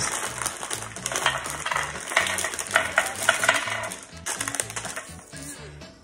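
Small jars of shaker crystals clicking against each other and on the mat as they are unpacked and set down, with plastic packaging rustling; soft background music with a steady bass line underneath.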